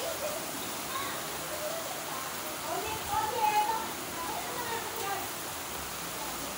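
Heavy storm rain pouring steadily, with faint voices talking in the background, mostly around the middle.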